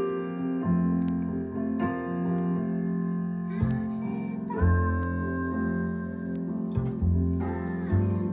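Piano and upright double bass playing a piece together: sustained piano chords over deep notes plucked pizzicato on the bass.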